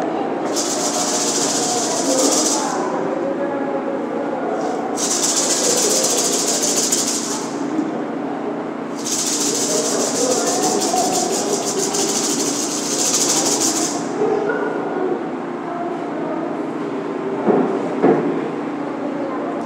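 A hand rattle shaken rapidly in three bursts, the last and longest about five seconds, over a low steady background.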